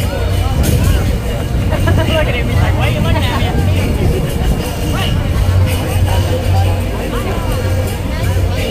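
Indistinct crowd chatter with some music over a steady low rumble.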